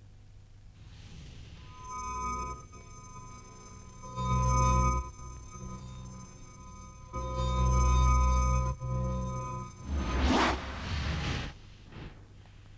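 Film-company logo music for Filmko Pictures: sustained shimmering synth tones with two deep bass swells, then a rushing whoosh-like sweep near the end.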